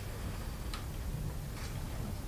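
Quiet room tone with a steady low hum and two faint clicks, one about a second in and one near the end.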